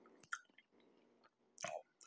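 Faint chewing of a mouthful of food picked up close by a lapel microphone, with a short mouth click about a third of a second in and a brief wet mouth noise near the end.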